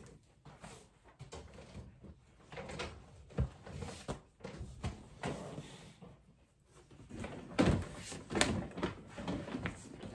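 Knocks, bumps and scrapes of a piece of office furniture being worked back out of a tight spot by hand, irregular throughout, with the heaviest knocks about three-quarters of the way in.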